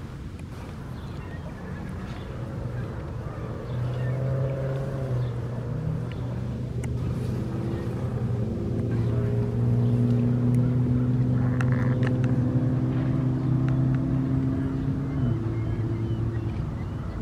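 An engine's steady low hum passing by, growing louder from about four seconds in and staying loud through the second half, with its pitch rising once near the middle.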